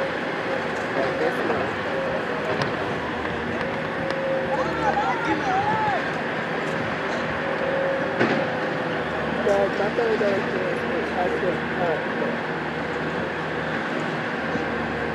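Distant shouts and calls of players on a soccer field, heard a few times over a steady background noise.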